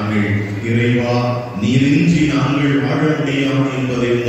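A man chanting in long held notes, intoning liturgical text in a sing-song melody.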